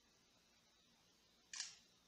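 Huawei P8 smartphone playing its camera-shutter sound once, about one and a half seconds in, as a screenshot is captured with the power and volume-down keys pressed together. Near silence before it.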